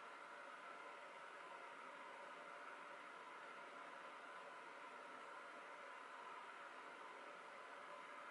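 Near silence: a steady faint hiss of room tone.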